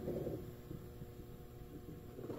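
Ever-so-slight steady hum from the power transformer of a Westinghouse console tube amplifier, switched on and idling. The hum comes from the transformer itself, not from the speakers.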